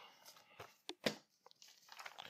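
Faint rustle of paper bills being handled, with a couple of light clicks about a second in.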